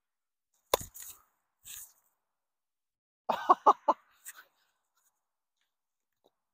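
A hurley strikes a sliotar with one sharp crack about a second in, a shot struck for side spin. A couple of seconds later comes a louder, short vocal outburst in four quick pulses.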